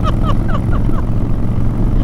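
Honda Fury's 1,300 cc V-twin engine running steadily at cruising speed, a low, even drone.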